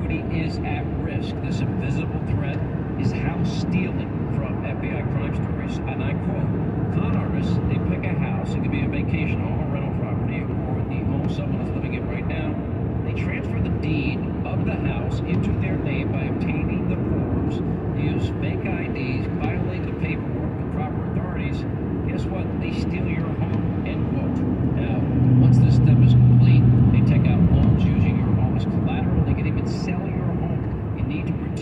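Steady road and engine noise inside a car cruising on a highway, with many faint short clicks. A low hum swells louder for a few seconds near the end.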